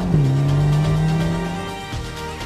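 Ferrari Portofino M's 3.9-litre twin-turbo V8 accelerating hard: an upshift just after the start drops the revs with a sharp crack, then the engine note climbs steadily again. Near the end it fades under background music.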